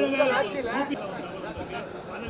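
Speech only: a man talking for about the first second, then quieter overlapping chatter of several voices.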